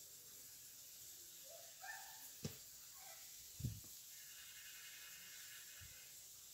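Wooden spoon stirring chicken and onion in a non-stick frying pan. Two soft knocks of the spoon against the pan stand out, the louder one about three and a half seconds in, over a faint steady hiss.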